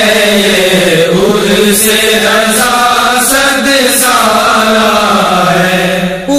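Wordless vocal chanting behind an Urdu manqabat: long held notes that slide slowly up and down in pitch, with no words sung.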